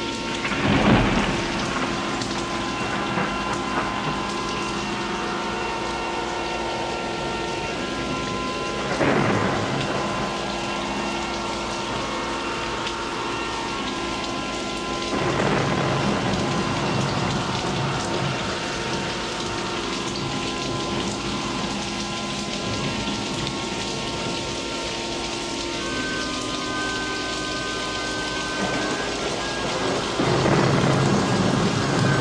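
Thunderstorm sound effect: steady rain with rolling thunderclaps about a second in, around nine seconds and around fifteen seconds, over faint held chords that change twice.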